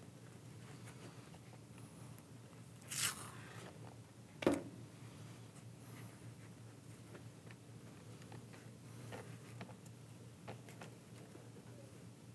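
Hands fitting a Sena 30K helmet speaker and its wire into a motorcycle helmet: faint handling rustles and small clicks, a short rasp about three seconds in, and a sharp click a second and a half later that is the loudest sound.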